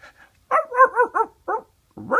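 A person imitating a dog, about five quick high yaps in a row, with a short pause before the last.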